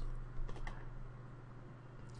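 A few faint computer keyboard clicks in the first second, over a low steady hum that continues on its own.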